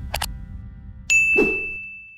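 Subscribe-button sound effects: a quick double mouse click, then about a second in a bright notification ding that rings on, over the tail of fading outro music.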